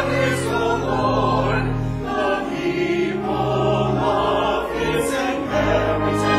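Church choir singing an anthem in parts, with long held organ notes underneath that move step by step.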